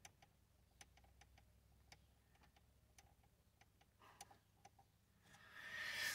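Near silence, broken by faint, irregularly spaced ticks, with a rising rustling hiss near the end.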